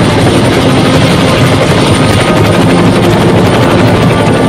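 Helicopter rotor sound effect: a loud, steady beating whir as a helicopter sweeps close past.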